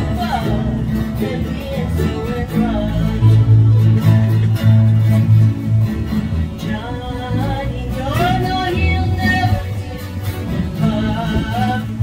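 Live acoustic guitar strummed with a woman singing along; the voice comes in phrases, near the start and again from about seven seconds in, with a stretch of guitar alone between them.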